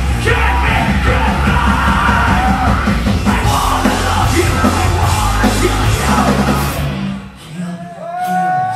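Industrial punk rock band playing live: a singer shouting into the mic over loud drums and distorted guitars. The music stops abruptly about seven seconds in.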